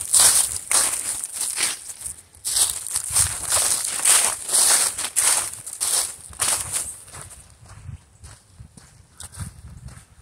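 Footsteps crunching through dry fallen leaves on a woodland trail, about two steps a second, with the crackle of leaves under each step. The steps grow quieter near the end.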